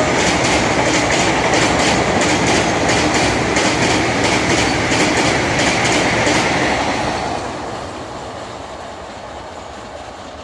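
Vande Bharat Express electric multiple-unit train passing close by, its wheels clattering over the rail joints in a steady clickety-clack. The sound dies away from about seven seconds in as the last coach goes by.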